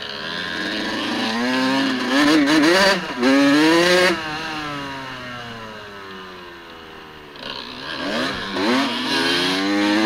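Dirt bike engine on the move, revving up and easing off in turn. It is loudest about two to four seconds in, then its pitch and level fall away as the bike slows, and it climbs again over the last couple of seconds.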